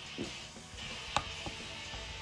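Faint background music with a sharp click about a second in and a lighter one shortly after: small plastic toy wrestling figures tapping against a toy ring.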